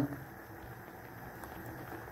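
Pot of water at a rolling boil around whole peeled potatoes: a steady bubbling.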